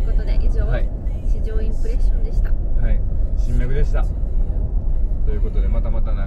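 Steady low road rumble inside the cabin of a Mercedes-Benz G400d driving at highway speed, with voices talking over it.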